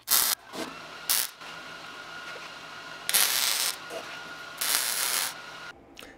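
MIG welding arc laying short tack welds on sheet steel: four separate bursts of crackling hiss, two brief ones in the first second, then two longer ones of under a second each, about 3 and 5 seconds in.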